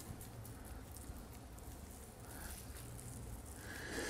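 Faint rubbing of a damp folded towel wiped over a car's painted front bumper, over a low steady hum.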